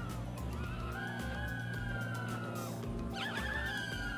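Mini quadcopter's tiny motors whining in flight, the pitch rising and falling with the throttle and dropping out briefly about three seconds in before coming back.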